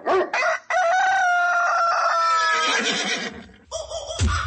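A rooster crowing sound effect: one long call held for about two seconds, sinking slightly in pitch at its end.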